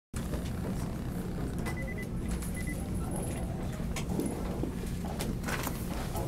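Press-room background noise: a steady low rumble with scattered clicks and rustles, and two short high beeps about two seconds in.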